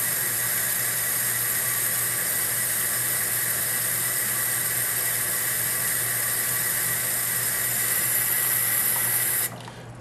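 Kitchen faucet running steadily into a plastic fuel-filter funnel held in the sink. The water cuts off suddenly near the end as the tap is shut off.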